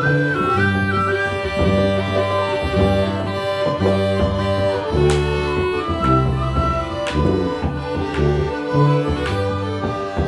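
A small folk ensemble of accordion, penny whistle, cornemuse (bagpipe), bodhrán and tuba plays a simple South African dance tune. The tuba holds a repeating bass line under the accordion and bagpipe melody. The penny whistle trills high in the first second or so, and sharp bodhrán strokes fall through the middle.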